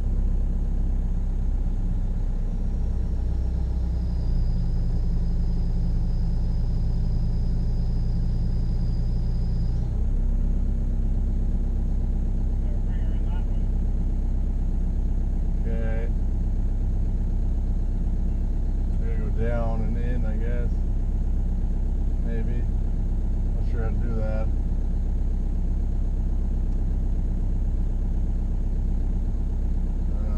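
Excavator diesel engine running steadily, heard from inside the cab. From about three seconds in, a deeper hum joins, with a thin high whine over it. Both drop away at about ten seconds.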